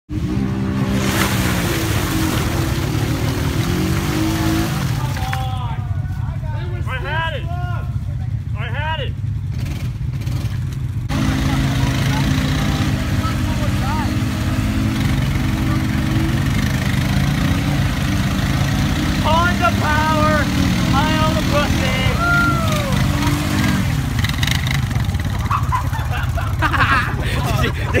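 ATV engines running, their revs rising and falling as a four-wheeler works through a mud hole. Short high-pitched calls come in two clusters, a few seconds in and again about two-thirds of the way through.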